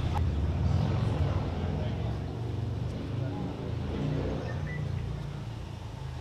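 Low, steady rumble of a motor vehicle engine running, with faint voices in the background.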